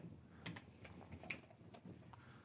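Near quiet, with a few faint, scattered clicks and taps of small plastic glue bottles and prop parts being handled on a workbench.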